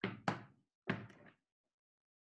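Three sharp knocks on a hard surface: two in quick succession, then a third just under a second in.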